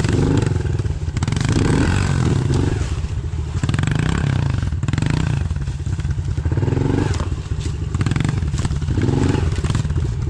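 Honda pit bike engines, small four-stroke singles, running at low speed over rough ground, with short throttle blips whose pitch rises and falls every couple of seconds.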